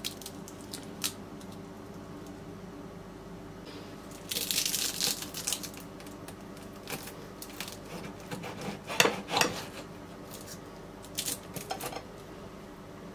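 Crisp baked baklava pastry crackling as a knife and fork cut and pull it apart on a china plate, with the metal cutlery clinking and scraping on the plate. A dense crackle comes about four seconds in, and the sharpest clinks about nine seconds in.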